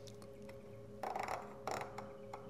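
Lensatic compass bezel being turned by hand to set the index marker: two short bursts of soft clicking and handling, one about a second in and one near the end, over a faint steady tone.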